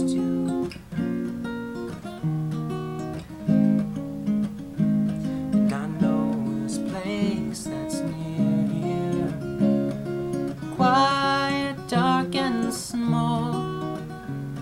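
Acoustic guitar fingerpicked, a continuous instrumental passage of picked notes and chords.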